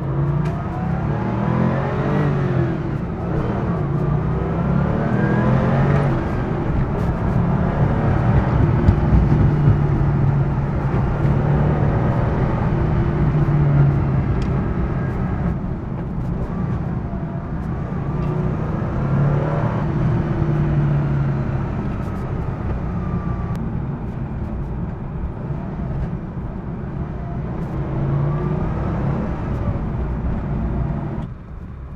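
Porsche 993 GT2's air-cooled twin-turbo flat-six heard from inside the cabin, pulling hard under acceleration: its pitch rises again and again and drops back at each gear change, over steady road noise.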